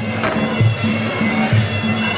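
Traditional Muay Thai fight music (sarama): a reedy pi java oboe plays a held, wavering melody over a steady, regular beat of hand drums.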